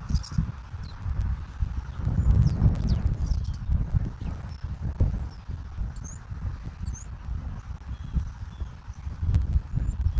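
Wind buffeting an outdoor camera microphone in irregular low rumbles, strongest about two to three seconds in, over a steady hiss of road traffic. Several short, high chirps of small birds come through faintly.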